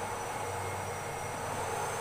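Steady background noise: a low hum and an even hiss with a faint high whine, without distinct strokes or knocks.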